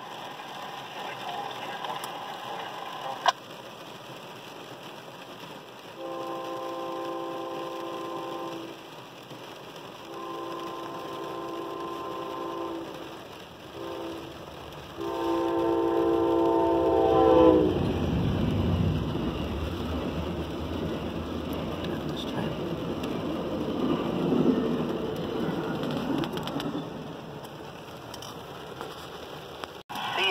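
Amtrak passenger train's locomotive horn sounding the grade-crossing signal: two long blasts, a short one and a final long one, starting about six seconds in. The train then passes over the crossing with a steady rush of wheels on rail, louder than the horn.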